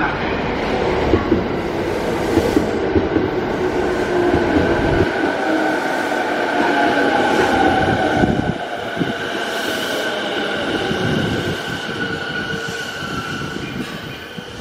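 JR E217-series electric train pulling into the platform and braking, its wheels rumbling on the rails with a motor whine gliding down in pitch as it slows toward a stop.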